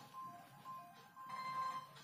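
A faint tune of thin, steady high notes in the background, stepping between a few pitches, with the notes growing fuller in the second half.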